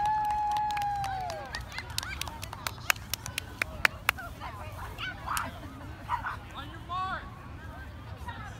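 Spectators cheering at a children's race: one voice holds a long, steady, high shout for about a second and a half, dropping in pitch as it ends. A run of sharp claps follows, then scattered children's shouts.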